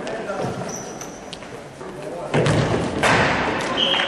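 A futsal ball being kicked and thudding on a wooden gym floor, with players' and spectators' voices shouting, much louder from about halfway through.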